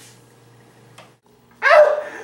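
A dog barks once, loud and short, about a second and a half in, after a quiet stretch.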